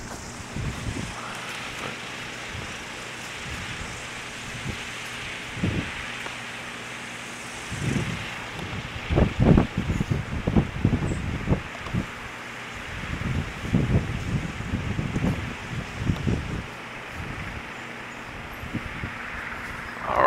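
Gusty wind buffeting the microphone over a steady rushing background of wind; the buffeting comes in uneven gusts, heaviest from about eight to sixteen seconds in.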